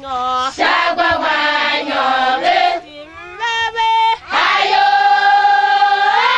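Women's voices singing a chant-like song together, in short phrases with breaths between them. About four seconds in, the singers hold one long note.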